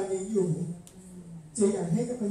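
Speech only: a woman talking into a hand-held microphone over a room PA.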